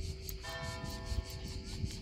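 Church bells ringing. A new stroke comes about half a second in, and its notes ring on.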